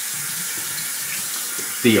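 Water running steadily from a sink tap, stopping near the end.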